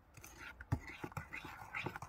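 A faint whispered voice, with a few light knocks as a small bowl is handled on a glass sheet, the loudest about three-quarters of a second in.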